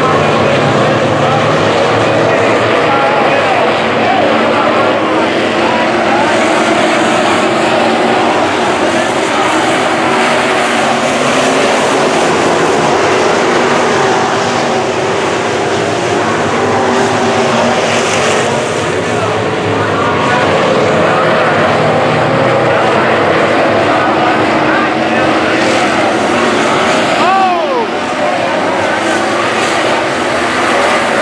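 A pack of dirt-track sport modified race cars running at speed, several V8 engines overlapping, their pitch rising and falling as cars come through the turns. Near the end one car passes close with a quick sweep in pitch.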